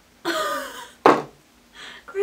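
A woman's drawn-out groan of dismay, then about a second in a short, sharp burst as the bottle of separated pore-vanisher primer spurts liquid out onto the desk.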